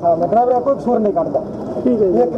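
A man's voice speaking in Hindi or a local dialect, talking steadily.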